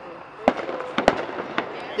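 Fireworks going off: about four sharp bangs, two of them close together about a second in, with crackling between.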